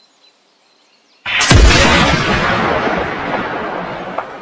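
After about a second of near silence, a single loud rifle shot rings out, and its echo dies away slowly over the following seconds.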